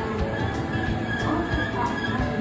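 JR West rapid-service electric train moving along a station platform track: a steady rumble of wheels on rail, with a faint steady high tone over it.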